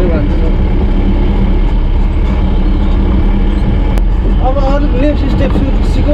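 Steady low engine and road rumble inside the cab of a moving vehicle. A voice comes in over it about four and a half seconds in.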